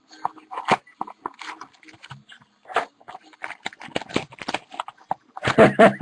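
Clear plastic wrap and a foil trading-card pack being handled and pulled open, crinkling in a run of irregular crackles and rustles.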